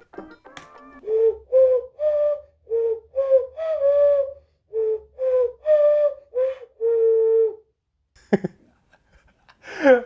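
Cupped-hand whistling playing a tune: about a dozen short, low, hooting notes that step up and down, ending on one longer held note.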